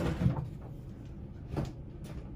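A few short knocks of oil pastel sticks being handled: taken from their cardboard box and set down on the tabletop. The loudest comes right at the start, a smaller one just after, and another about a second and a half in.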